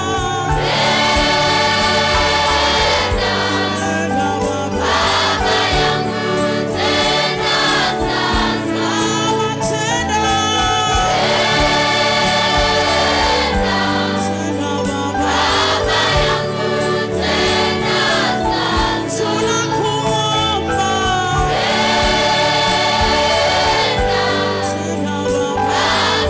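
Gospel choir music: a choir singing long held chords over a steady bass line, the voices swelling about every ten seconds.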